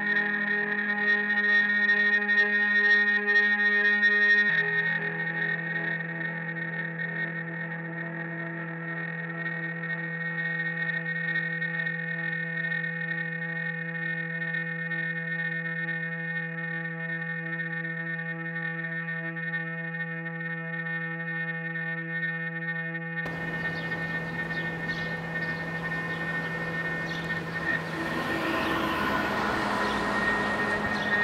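Electric guitar played through effects pedals into an amplifier, holding one long droning note that steps down to a lower note about four seconds in. About two-thirds of the way through, the drone gives way to a rough, noisy wash.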